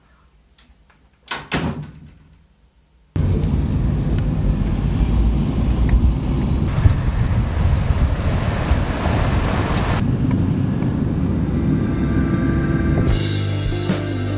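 A door shuts with a brief bang about a second in. Then a car's engine and tyre road noise start abruptly and run loud and steady, giving way near the end to guitar music.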